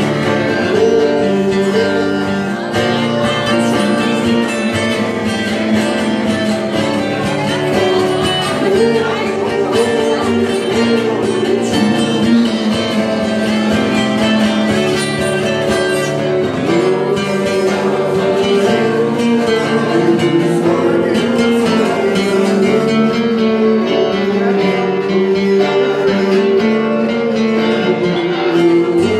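Two acoustic guitars played live together, strummed chords under a melody line that bends up and down.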